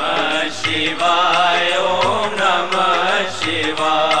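Hindi devotional Shiva bhajan music: a wavering melody line over a steady drum beat.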